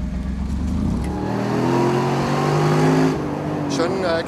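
Mercedes-Benz SLR McLaren Roadster's supercharged 5.5-litre V8 accelerating. The engine note climbs for about two seconds, then drops about three seconds in.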